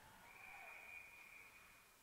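A referee's whistle, heard faintly across the ice rink: one long steady blast that blows the play dead.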